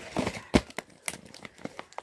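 Crinkling and knocking of snack packaging being handled: a cardboard chocolate box picked up and set down among crisp packets and wrappers. A string of short knocks and rustles, the sharpest about half a second in.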